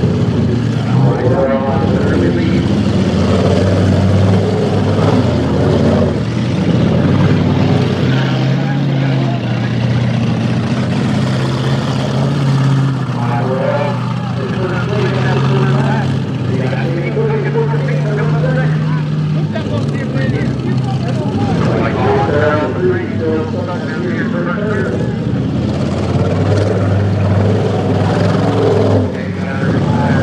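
Engines of full-size demolition derby cars running and revving on a dirt arena, a loud, steady drone whose pitch shifts now and then.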